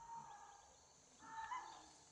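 Two short animal calls, each held on a level pitch, one at the start and a louder one about a second later.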